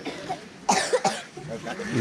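A person coughing, a short loud burst of coughs about a second in.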